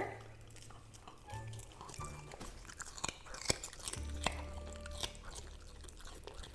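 Golden retriever puppy biting into and chewing a slice of cucumber: a run of irregular wet crunches, the sharpest about three and a half seconds in.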